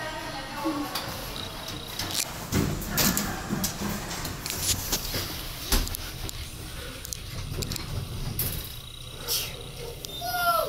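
Elevator doors sliding open, with a low rumble for a few seconds and a sharp knock about six seconds in, among scattered clicks and knocks.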